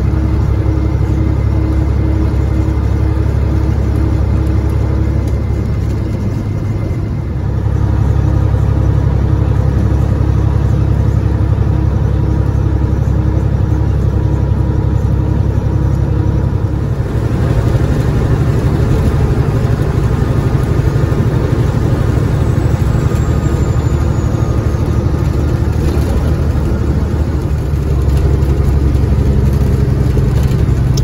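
Cat 3406E inline-six diesel of a Freightliner FLD120 truck running at road speed, heard inside the cab as a steady low drone mixed with road noise. The sound steps up in level about seven seconds in and again around seventeen seconds.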